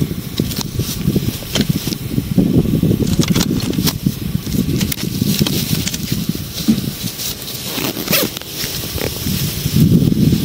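Rustling with scattered clicks and knocks as objects are handled and shifted in the bed of a pickup truck.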